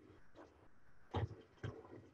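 Faint short bursts of whirring and knocking from a small servo-driven wheeled robot moving on a tabletop, the loudest a little after a second in, another about half a second later.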